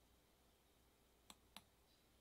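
Near silence broken by two quick clicks about a third of a second apart, a computer click advancing the presentation slide.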